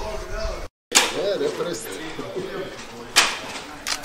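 Indistinct voices of people talking in the background, with the sound cutting out for a moment near the start. Sharp knocks follow: one just after the gap, then two more about three seconds in and near the end.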